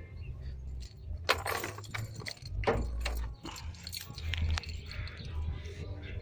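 Handling around a car's open driver's door: several sharp clicks and knocks, the clearest about a second in and near the middle, over a low rumble on the microphone.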